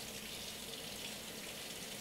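Kitchen tap left running into the sink, a steady even rush of water.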